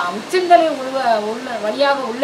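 A woman's voice drawing out a slow melodic line in long, smooth rises and falls, over a steady hiss.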